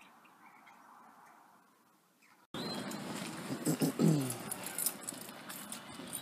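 Quiet outdoor background, then an abrupt jump to louder outdoor background noise. A few short animal calls, each falling in pitch, come about four seconds in.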